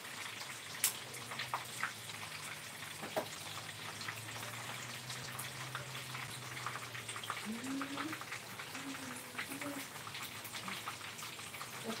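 Food frying in oil in a pan on the stove: a steady sizzle full of fine crackles, with a few sharper pops.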